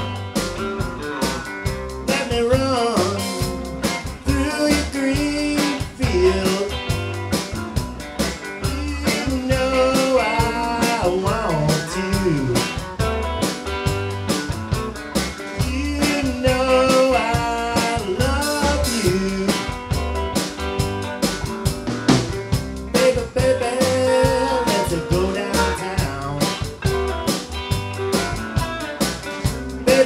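Live band playing a blues-rock tune on electric guitars and a drum kit, with bending guitar notes over a steady beat.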